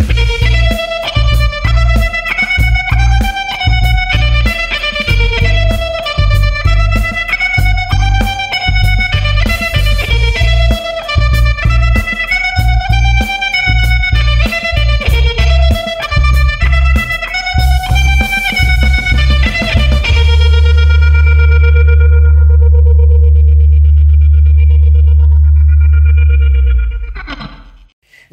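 Electric guitar (a Gibson Les Paul Standard) played through tremolo, phaser and reverb pedals: a run of quick, choppy picked notes, then a final chord held for about seven seconds that fades out near the end.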